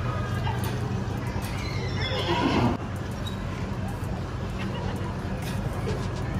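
A horse whinnies once, a call of under a second about two seconds in that stops abruptly, over a steady low hum.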